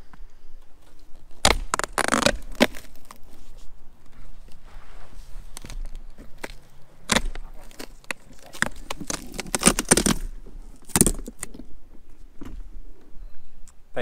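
Flexible solar panel being pried up off polycarbonate roof strips, its double-sided tape tearing away: irregular cracking and snapping, in clusters near the start and again past the middle, as the adhesive and a few of the plastic strips give way.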